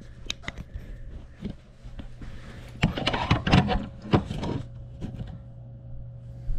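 Handling noise of a small action camera held in the hand: clicks, taps and rubbing right at its microphone, loudest and busiest from about three to four and a half seconds in, over a steady low hum.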